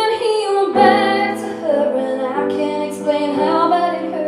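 A woman singing live while accompanying herself on a grand piano, her held notes bending in pitch over steady piano chords.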